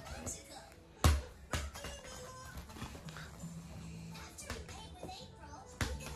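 A small rubber ball bouncing on a foam play mat: a sharp thump about a second in, a softer one just after, and another thump near the end.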